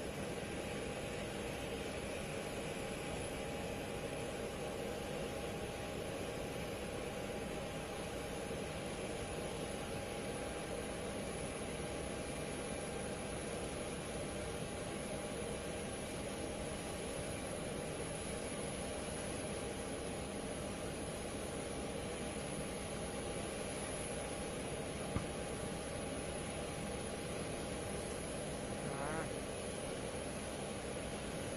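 Steady drone of idling engines with a faint constant whine, unchanging throughout, with one brief click about 25 seconds in.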